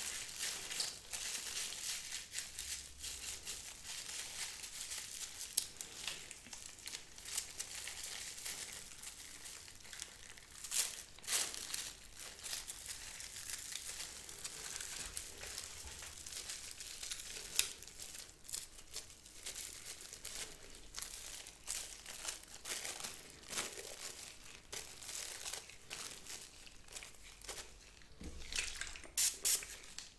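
Close, continuous crinkling and rustling of plastic and black nitrile gloves as gloved hands handle a tattoo machine, with a few sharper clicks and snaps along the way.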